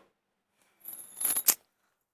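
A short rustle and metallic jingle, like bangles and clothing moving as a woman turns quickly, ending in a sharp click about one and a half seconds in.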